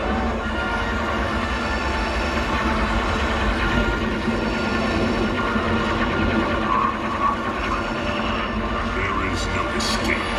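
A film soundtrack playing over cinema speakers, heard in the room: continuous music with sound effects underneath, at a steady level.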